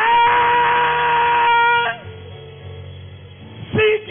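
A man's voice through a microphone and PA, sliding up into a long held high note for about two seconds, then breaking off; short broken vocal cries come near the end, over soft sustained instrumental backing.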